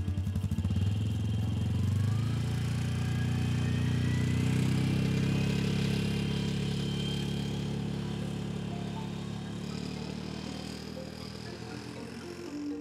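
Quad bike engine pulling away, its pitch climbing with a thin rising whine, then running steadily as it moves off and slowly fades into the distance.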